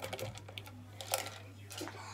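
A few light clicks and knocks of small plastic fidget toys being handled and dropped into a plastic storage box, over a steady low hum.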